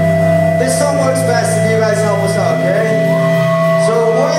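Live rock band at a concert holding a steady droning chord, with voices shouting and calling over it. The sound is loud and boomy, as recorded from the audience.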